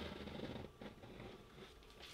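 Edge of a plastic card scraping across watercolour paper, lifting paint to put texture into the painted mountains. A faint scrape fades out within the first second, and a shorter, fainter one follows about a second in.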